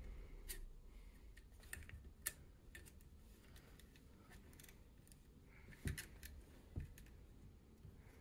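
Faint, irregular light clicks and ticks of small metal parts as an AR-15 ejection port dust cover, its spring and hinge rod are handled and fitted onto the upper receiver, with two slightly louder clicks near the end.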